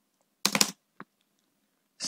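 Computer keyboard keystrokes: a quick cluster of a few keys about half a second in, then a single keystroke at about one second.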